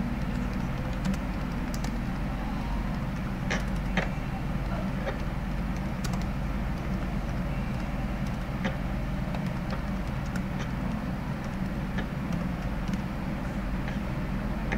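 Computer keyboard keys clicking now and then during typing, over a steady low background hum.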